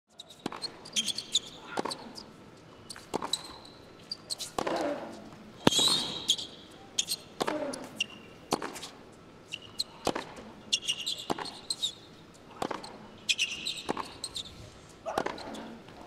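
Tennis rally on an indoor hard court: racket strikes and ball bounces every second or so, the hardest hit about six seconds in. Players grunt on some shots, and shoes squeak sharply on the court as they move.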